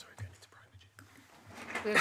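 Quiet committee-room tone with faint murmuring and a couple of small knocks, then a voice starts speaking near the end.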